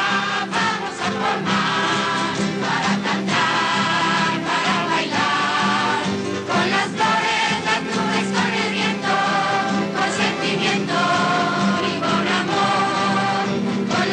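A group of voices singing a song together with acoustic guitar accompaniment, many of the notes held long.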